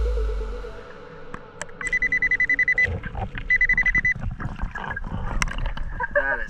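Underwater metal detector's target alert: two bursts of rapid high-pitched beeping, about a second and then about half a second long, heard through the camera housing, with faint clicks. Background music fades out at the start.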